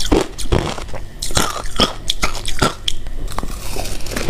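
Close-miked chewing of shaved ice: a quick, irregular run of crisp crunches, several a second.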